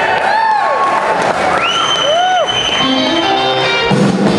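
Audience applauding and cheering, with whooping calls that rise and fall and a long, steady high whistle in the middle.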